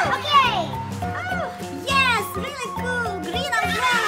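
Children's voices calling out in high, rising and falling cries over background music with steady held notes.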